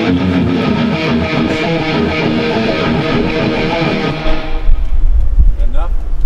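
Electric guitar and bass guitar playing a heavy metal riff together, breaking off about four and a half seconds in; a low rumble follows.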